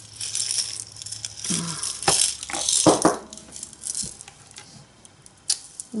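Loose beads rattling and clinking against the inside of a glass jar as it is tipped and shaken. The clatter is loudest about two to three seconds in, then dies down to a few scattered clicks.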